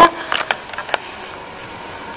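A few short knocks within the first second, then a steady background hum.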